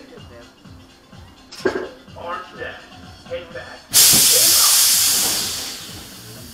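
A sudden loud hiss of compressed air about four seconds in, fading away over the next two seconds. It is Kingda Ka's pneumatic launch-track brakes releasing as the train sits ready for the hydraulic launch.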